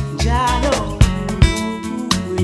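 South African pop music with a deep bass line and drum hits, and a wavering lead line that bends up and down in pitch about half a second in.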